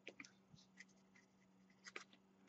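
Faint, sparse crinkles and ticks of crumpled aluminium foil being pressed and shaped between the fingers, over a faint steady low hum.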